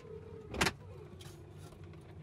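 Electric motors of a 2015 GMC Yukon's power-folding rear seats whining as they raise the seatbacks, with a single clunk about half a second in. The whine is faint and drops a little lower in pitch after about a second.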